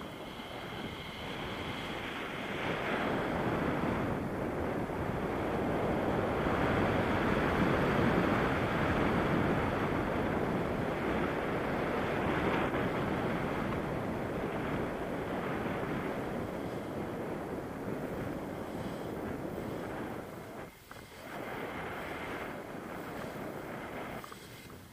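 Wind rushing over an action camera's microphone as a tandem paraglider flies through the air: a steady rushing noise that swells through the middle and dips briefly near the end.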